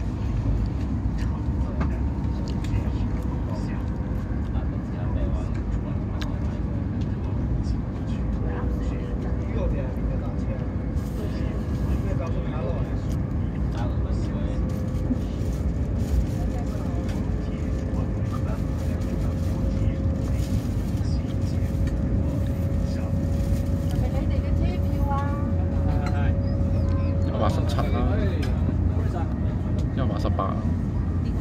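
Cabin noise inside a CRH380A high-speed train running at about 140 km/h: a steady low rumble from the wheels and track. A thin steady whine comes in about a third of the way through, climbs slightly in pitch and stops near the end.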